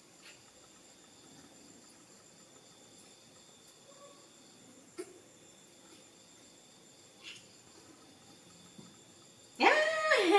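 Quiet room with a few faint, short clicks during bottle-feeding of a baby monkey. Near the end, a sudden loud high-pitched voice cuts in, its pitch falling.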